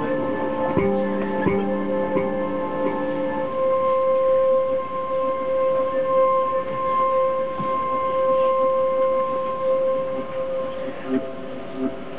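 Hurdy-gurdy with live electronic processing, playing minimal, drone-based music: a steady drone runs throughout. Lower held notes sound over it for the first three seconds or so, then stop; the drone carries on alone until new notes come in near the end.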